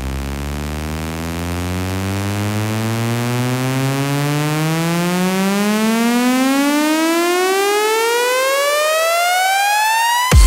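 Electronic dance music build-up: a buzzy synth riser climbing steadily in pitch and swelling slightly louder, while the deep bass under it fades out about halfway through.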